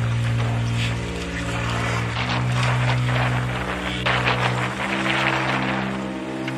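Background music of sustained chords, changing about every two seconds, over an even hiss of outdoor noise.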